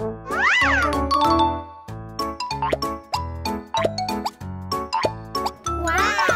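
Background music of short pitched notes over a bass line, with a tone that glides up and back down about half a second in and another glide starting near the end.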